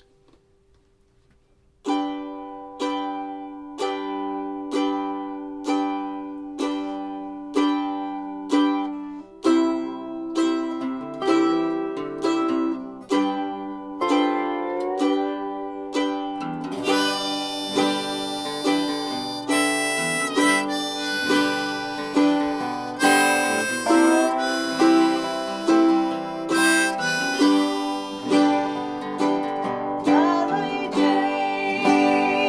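Acoustic string band starting a song with an instrumental intro. After a moment of near silence a plucked string instrument picks a steady repeated note, a little more than one a second. Around ten seconds in more strings join, with sliding notes from a resonator guitar played lap-style with a slide, and a harmonica comes in about seventeen seconds in.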